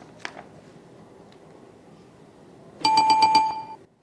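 A bell rings rapidly for about a second, starting near the end: the signal that the word was spelled correctly.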